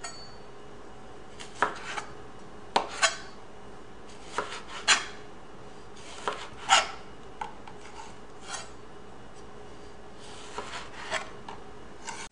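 Chef's knife slicing a homegrown tomato into rounds on a plastic cutting board: about a dozen irregular strokes, each a short scrape through the tomato ending in a tap of the blade on the board.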